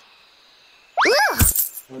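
A coin tossed for a wish: a short high rising-and-falling cry comes about a second in, then a coin lands with a clink and a dull thud.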